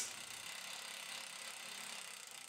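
Faint, steady background hiss of room tone; the impact driver is not running.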